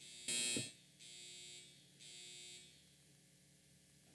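An electronic buzzer sounds once briefly, followed by two softer, longer beeps about a second apart.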